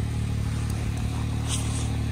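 Can-Am Maverick side-by-side's engine idling steadily at a low, even pitch.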